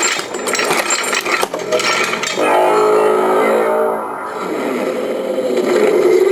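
Hasbro Marvel Legends Infinity Gauntlet replica playing its electronic sound effects, set off by moving its fingers in sequence: a crackling, rumbling power-up noise, then a sustained humming tone from about halfway through that settles into a lower drone.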